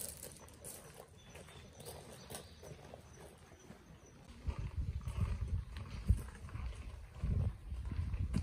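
Quiet outdoor ambience with a few faint ticks, then gusty low rumbling of wind on the microphone from about halfway through, with one sharp buffet near the end.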